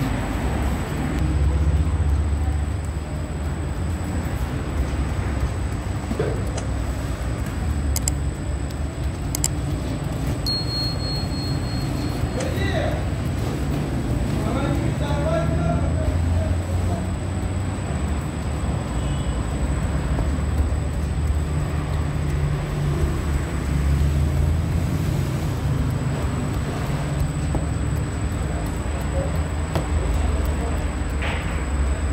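Steady low machine rumble of bakery equipment such as the oven's burner and fans, with faint voices in the middle and a brief high tone about a third of the way through.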